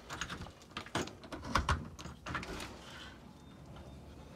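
Irregular light knocks and clatters of clutter being bumped and handled, thickest in the first couple of seconds and then dying down.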